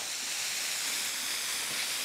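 Quarter-pound beef patties sizzling steadily on a hot Blackstone flat-top griddle, just flipped after about three minutes of searing on the first side.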